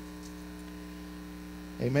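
Steady electrical mains hum, one low buzzing tone with a few higher overtones, held at an even level through a pause in speech.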